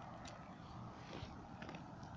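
Faint steady outdoor background noise by a pond, with a few light ticks.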